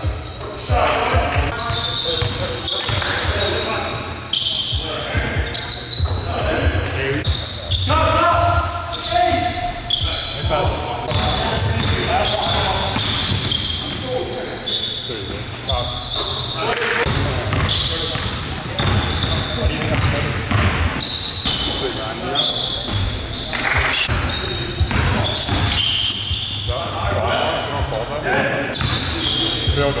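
Sound of an indoor basketball game in a gymnasium: players' voices calling out over the ball bouncing on the hardwood court, echoing in the hall.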